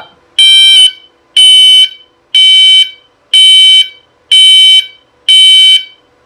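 Gent fire alarm sounder sounding a loud pulsed tone, about one beep a second, each beep lasting about half a second, set off from the control panel's device test.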